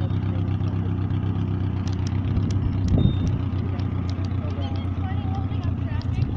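Steady low hum of a motor vehicle idling, with a brief swell about three seconds in.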